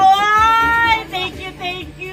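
A high-pitched voice holds one long, slightly rising note for about a second, then breaks into several short syllables.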